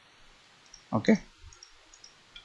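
A few faint computer mouse clicks, scattered through the moment.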